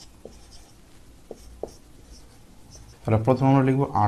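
Felt-tip marker writing numbers on a whiteboard: faint scratching strokes with a few light taps of the tip.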